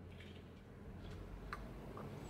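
A quiet low background hum with a few faint, short ticks scattered through it.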